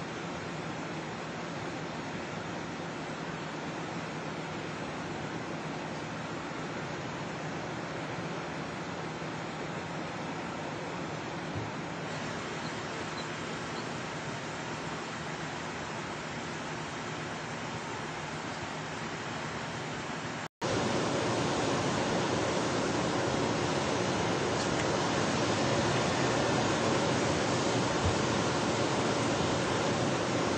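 Steady rushing noise with no distinct events. It cuts out for an instant about 20 seconds in and comes back louder.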